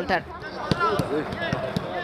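A football being kicked back and forth in a short passing drill: several sharp thuds of boot on ball, with voices calling out in the background.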